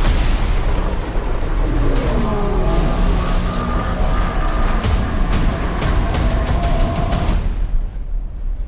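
Dramatic trailer music over a dense, rumbling storm roar of tornado sound effects, with a falling line of tones and booming hits. From about five seconds in, a run of sharp hits speeds up into a rapid riser, then everything cuts off suddenly just before the end.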